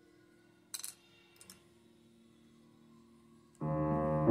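Upright piano: faint notes dying away, two soft clicks, then a loud chord struck near the end and held as the playing resumes.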